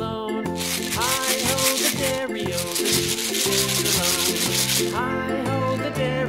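Scratchy, rasping rustle of a plastic surprise egg and its wrapper being rubbed and handled in the hands, starting about half a second in and stopping about five seconds in, over background music.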